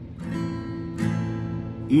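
Acoustic guitar strumming an A minor chord twice, the second strum about a second in, the chord left ringing.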